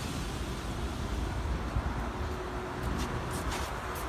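Steady low outdoor rumble of ambient traffic and wind on the microphone, with a few faint ticks near the end.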